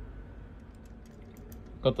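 A few faint, light clicks, small parts being handled, over a low steady hum; a man starts speaking near the end.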